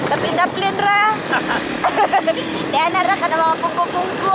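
Two people talking over the steady noise of a moving motorcycle, with wind on the microphone.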